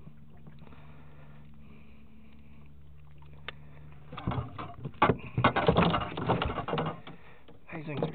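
A low steady hum, then from about halfway through a run of irregular knocks and rattles as a freshly landed northern pike is handled in a landing net on the boat floor.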